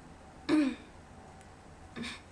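A girl clearing her throat once, briefly, about half a second in, with a second, shorter throat sound at the very end.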